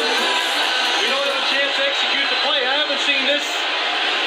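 Voices talking over background music, played through a television's speaker.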